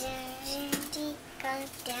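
A young girl singing a song, holding long, steady notes.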